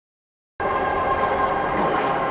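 Logo intro sound: a dense, many-toned ringing chord that starts suddenly about half a second in and is then held steady.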